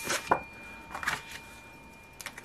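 Cardboard scratch-off lottery ticket being flipped over and laid down on a wooden tabletop: a few short taps and rustles of card on wood, the clearest at the start and about a second in.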